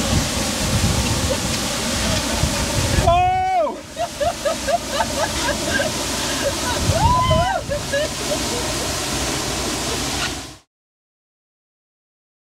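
Waterfall pouring heavily close by, its spray hitting the camera as a dense rushing noise. A person lets out a loud falling whoop about three seconds in, followed by quick excited vocal sounds and another cry around seven seconds. The sound cuts off suddenly near the end.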